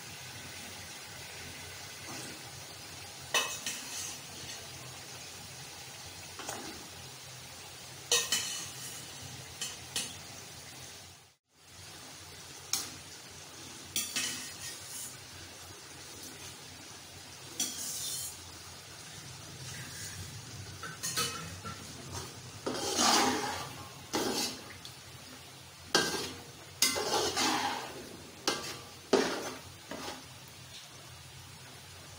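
Metal spoon clinking and scraping against a large metal cooking pot as boiled chickpeas are stirred into frying masala, over a faint steady sizzle. The scrapes come in short separate strokes, busier and louder in the last third.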